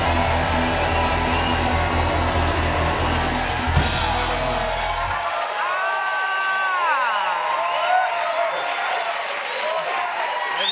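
Live house band with grand piano and horns playing, stopping about five seconds in; the studio audience then cheers and whoops.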